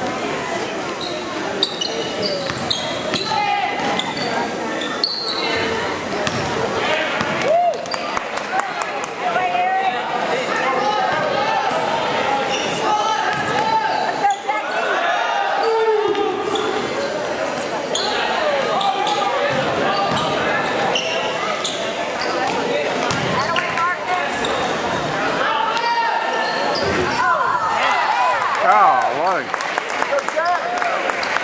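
Basketball game sounds in a gymnasium: a ball bouncing on the hardwood floor, over a steady echoing murmur of spectators' and players' voices.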